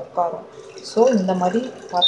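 A person talking, in two short stretches, with a faint high hiss between them.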